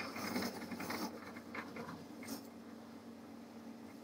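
Merz Servidor electric shoe cleaner running, its motor and spinning brush ring giving a low steady hum. Rustling and scratching in the first couple of seconds as a leather shoe is drawn out of the brush ring and handled.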